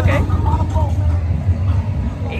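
A steady low rumble with brief, faint bits of a voice.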